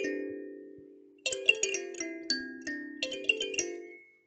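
A short musical jingle of bell-like, mallet-struck notes in three quick flurries, each left to ring and fade away.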